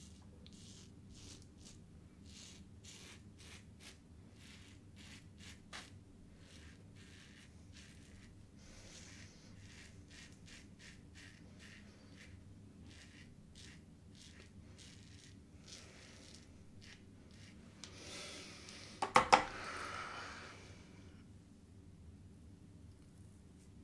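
Safety razor scraping through lather and stubble in a run of short, quick strokes, each a faint rasp, on a blade near the end of its life. Near the end comes a louder stretch of noise with a couple of sharp knocks.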